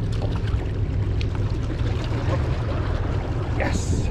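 Steady low rumble of wind buffeting the microphone, over water washing against the rocks at the shoreline. A brief brushing rustle near the end as the camera rubs against clothing.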